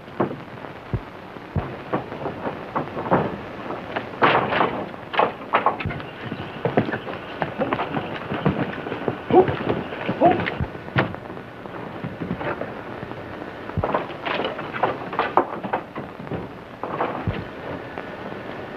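A run of irregular sharp bangs and knocks, some in quick clusters, over the hiss of an old film soundtrack.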